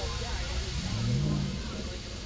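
Deep bass from a Chrysler Sebring's competition car-audio subwoofers playing music, heard from outside the car as a steady low rumble, with a brief rising bass note about a second in. Faint voices of people standing nearby.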